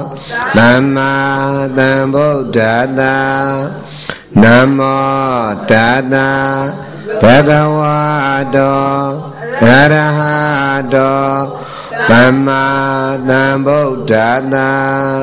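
A Burmese Theravada monk chanting Pali verses solo into a microphone. The chant comes in a string of long held phrases, each opening with a swoop in pitch.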